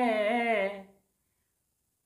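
A man's voice chanting a line of Odia verse in a sung, melodic recitation, its last note held and trailing off about a second in.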